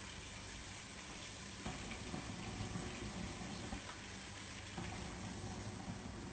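Onions and tomatoes cooking in oil in a pot on a gas burner, a quiet steady sizzle.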